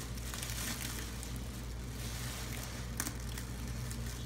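Clear plastic bag crinkling and rustling as it is pulled off a resin statue base, with a sharp crackle now and then.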